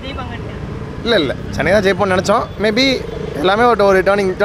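A man talking over steady street traffic noise. For about the first second only the traffic is heard, then the talking starts and runs on.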